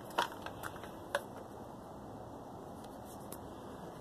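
A few small clicks in the first second or so, then a steady faint hiss of background room noise.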